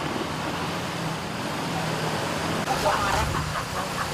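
Road traffic going by: a steady engine hum from a passing motor vehicle over a broad road noise, with a voice coming in near the end.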